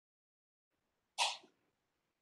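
A single short, sharp breath noise from a person at the microphone about a second in, lasting about a third of a second.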